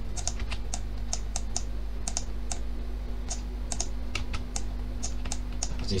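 Computer keyboard and mouse clicks, irregular, a few a second and sometimes in quick pairs, over a low steady electrical hum.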